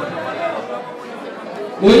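A man's voice over a microphone and loudspeakers pauses, leaving faint background chatter in a large hall, then resumes loudly near the end.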